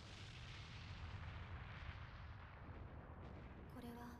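Faint, steady low rumble from the anime's soundtrack, with a quiet line of dialogue starting near the end.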